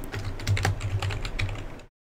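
Typing on a computer keyboard: a quick run of key clicks that stops abruptly just before the end.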